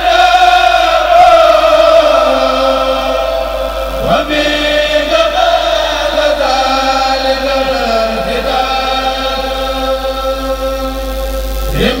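A kourel, a group of men chanting a Mouride khassida (religious poem) in unison, unaccompanied, through microphones. Long held notes slowly fall in pitch, with a fresh phrase starting about every four seconds.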